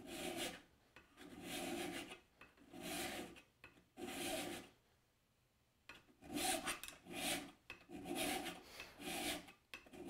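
Mill file stroked across the edge of a card scraper clamped in a vise, the file riding on a hardwood guide block: repeated rasping strokes, four slower ones, a pause of about a second in the middle, then quicker, shorter strokes. The file is jointing the scraper's edge flat and square at 90 degrees, re-establishing a worn edge before it is refined.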